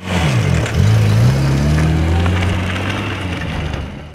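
Lada 2107 (VAZ-2107) sedan driving past close by. Its engine rises in pitch over the first second as it accelerates, then runs steadily and fades toward the end.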